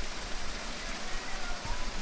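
Steady rushing of water at a canal lock, an even hiss with no separate strokes or knocks.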